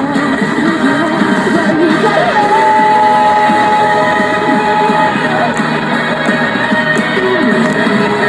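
A female singer performing a J-pop song live into a wired handheld microphone over a full backing track, holding one long note from about two to five seconds in.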